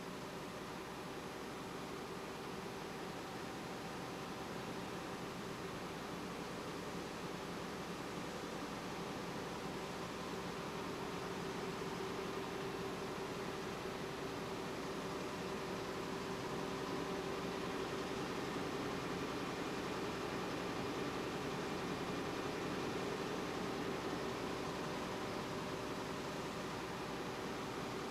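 Steady drone of a running web offset press and pressroom machinery under a hiss, with a constant low hum tone, swelling slightly louder through the middle.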